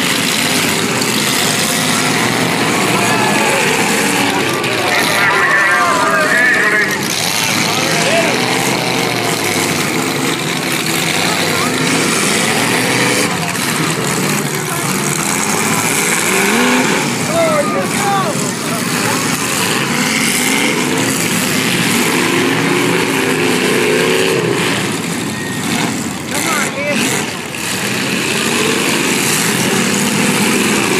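Several demolition-derby cars' engines running and revving at once, pitch rising and falling, over crowd voices.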